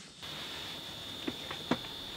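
Three faint, light clicks in quick succession over a steady faint high-pitched whine.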